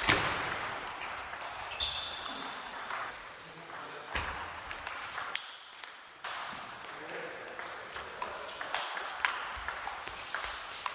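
Table tennis rally: the ball clicking off the bats and the table in an irregular run of sharp hits, some with a brief high ring, the loudest a sharp hit right at the start.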